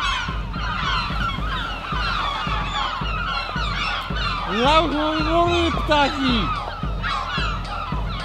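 A flock of gulls calling over one another without pause, many short squawks and cries. One louder, lower, drawn-out wavering call stands out from about four and a half to six and a half seconds in.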